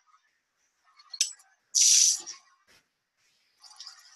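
A short burst of water spraying from a kitchen sink tap, about two seconds in, lasting about half a second, after a faint click.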